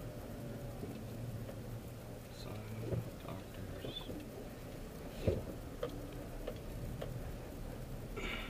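Steady low hum of a car cabin while the car moves slowly, with a few scattered clicks and knocks, the loudest about five seconds in, and a brief faint high chirp near the middle.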